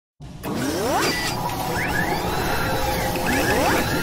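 Synthetic intro sound effects: a busy mechanical whirring and clattering, with quick rising whooshes about a second in, near two seconds and near the end.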